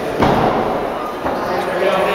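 Indistinct spectator voices in a large gym hall, with one sharp thud about a quarter second in from the fighters clinching in the ring.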